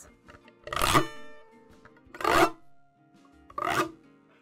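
Domra pick scraped in a sharp sweep along the metal frets between the strings, three quick scrapes about a second and a half apart, the strings ringing faintly in between.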